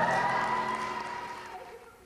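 A live rock band's final note is held and then fades away over about two seconds, dying out almost to silence.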